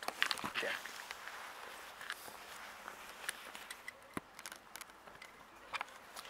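A few faint, scattered clicks and scuffs over quiet outdoor background, with a pair of sharper clicks near the end.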